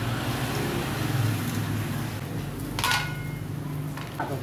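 A steady low hum runs throughout. About three seconds in comes one bright clink with a short ring: metal tongs touching a ceramic plate as food is served.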